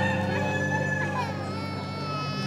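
A rooster crowing once in a long call that starts about a second in, over background music with sustained low notes.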